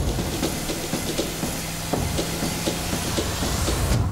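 Full-size SUV driving at speed: steady road and tyre noise with a low hum, scattered light ticks and a faint rising whoosh near the end.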